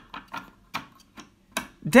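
Plastic bevel gears and knob of a hand-cranked rotating sign clicking as the knob is turned: a series of uneven clicks, roughly four a second.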